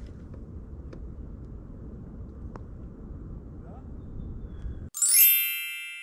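Faint, even background noise, then about five seconds in the background cuts out and a bright, high chime-like ding sound effect rings and fades over about a second.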